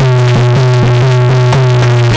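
Instrumental music: a steady low drone under a line of quick repeated notes, about four a second.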